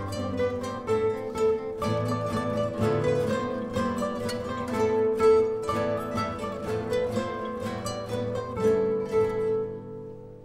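A guitar ensemble playing together, many guitars plucking a quick, rhythmic pattern of notes with a sustained melody line on top; near the end the phrase rings away.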